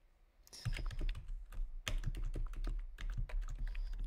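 Typing on a computer keyboard: a quick, uneven run of keystrokes, starting about half a second in.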